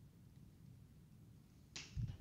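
Near silence, then near the end a short scratchy swish and a sharp tap: a stylus striking and stroking a tablet screen while writing.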